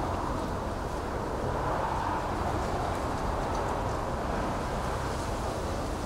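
Steady background room noise with a low hum and no distinct events.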